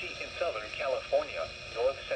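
NOAA Weather Radio broadcast voice reading a severe thunderstorm warning, played through a weather radio's small speaker with a thin, band-limited tone.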